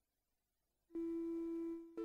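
Near silence, then about a second in a church organ starts a single held note. A second note enters right at the end, the start of the organ's playing.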